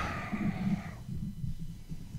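A man's drawn-out "well" trailing off in the first second, then a pause holding only a low hum and faint background noise.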